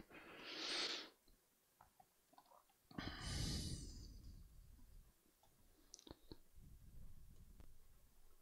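A person breathing close to a microphone: a short breath in the first second, then a longer, louder breath about three seconds in. A few faint clicks come near the end.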